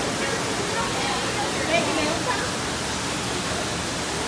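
Steady rushing noise with indistinct background voices of other visitors murmuring over it.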